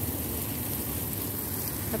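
Water spraying steadily from a garden hose onto the soil and leaves of a raised planter.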